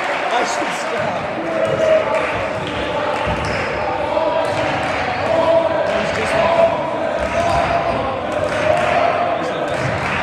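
A basketball being dribbled on a gym floor, the bounces echoing around the hall, under indistinct voices of players and spectators.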